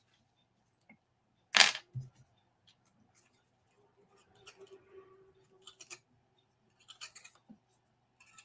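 Small handling sounds of cardstock pieces and a liquid glue bottle on a craft mat: one sharp click about one and a half seconds in, a softer knock just after, then faint rustling and light taps as the paper tabs are handled and glued.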